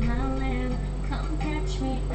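Female vocalist singing a studio vocal take over a backing track. A sound engineer judges the pitch and tempo of the take to be left uncorrected.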